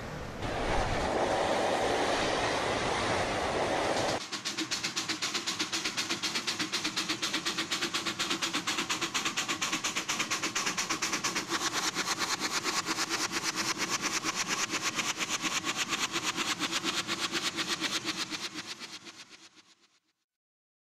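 Street traffic noise. After a sudden cut about four seconds in, a steam locomotive chuffs in a fast, even rhythm over a steady hiss of escaping steam, fading out near the end.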